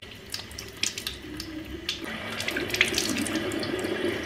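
Tap running into a bathroom sink while hands splash and rinse water on the face, with many small splashes over the steady flow.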